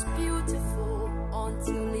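End-credits song: sustained low chords under a moving melody, with a singer's voice coming in right at the end.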